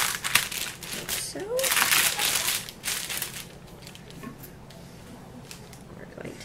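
Parchment paper crinkling as it is peeled back from a slab of set fudge, busy through the first half and then dying down to quiet handling.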